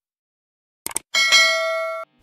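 Sound effect of a subscribe-button animation. A quick double mouse click comes about a second in. A bell chime follows right after: it is struck twice in quick succession, rings on, fades slowly and cuts off suddenly.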